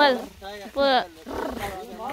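Speech: a person's voice finishing a word, then a short pitched vocal exclamation about a second in, followed by a breathy sound.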